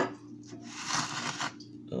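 Dry paydirt of gravel, sand and quartz pebbles rustling and rattling in a plastic gold pan, in two short bursts.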